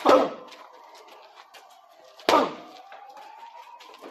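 Two hard punches landing during boxing training, about two seconds apart, each a sharp smack that dies away quickly.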